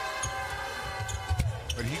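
A basketball bounced on a hardwood court by a shooter at the free-throw line: a few dull thumps. Over it runs a long held tone from the arena that slides down in pitch about a second and a half in.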